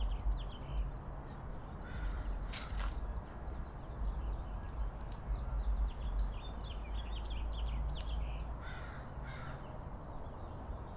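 Crows cawing, a few harsh calls about two seconds in and again near the end, over continual high twittering of small birds and a steady low rumble.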